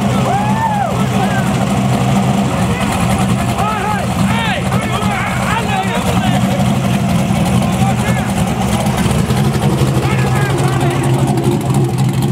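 Rock bouncer buggy's engine idling steadily with a low rumble, while spectators whoop and shout over it, mostly in the first half.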